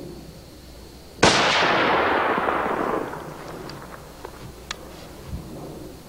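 Single rifle shot from an Indian-made Lee-Enfield bolt-action rifle chambered in .308 Winchester, fired about a second in, with a long echo that fades over about two seconds.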